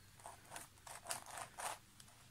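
Layers of a 3D-printed Axis Megaminx twisty puzzle being turned by hand: about five faint, short plastic scrapes and clicks as the layers rotate.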